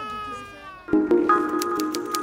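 A young child crying in one long wail that slowly falls in pitch and fades. About a second in, steady music comes in.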